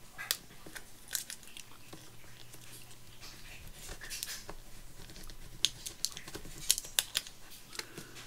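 Small paper and chipboard embellishments being handled and pressed down on a cutting mat: scattered soft clicks, taps and rustles.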